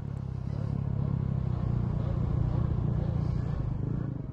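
Motocross bike engine running with a low, steady drone as the bike moves away over the finish-line jump.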